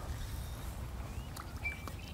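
Quiet outdoor ambience at a pond: a low rumble of wind on the microphone, with a couple of faint short high chirps from small animals, one rising slightly and one held briefly near the end.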